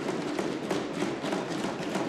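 Applause from a group of members in a debating chamber: many hands clapping at once, holding steady for the whole pause in the speech.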